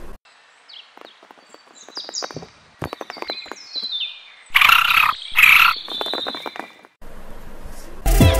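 Static hiss, then a creature's high, short, falling chirps with faint clicks, followed by two loud harsh shrieks about halfway through. A burst of static hiss comes near the end.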